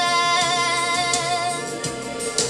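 A young woman singing one long held note with a light vibrato, which fades just before the end.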